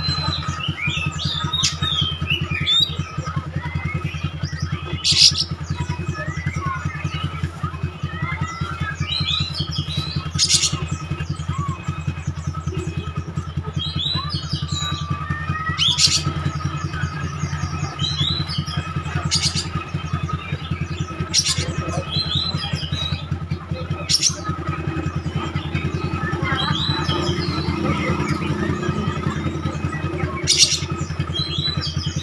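Oriental magpie-robin (kacer) singing in short bursts of varied whistled and chattering phrases, over a steady low engine hum. Sharp clicks come every few seconds.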